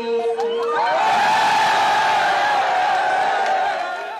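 A crowd cheering and screaming at a marriage proposal, breaking out about a second in and easing off near the end.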